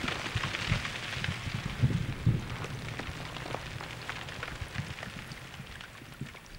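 Ambient electronic music built from field recordings of snow, ice and cable-lift machinery: a dense crackling, rain-like texture of clicks over a low rumble, slowly fading.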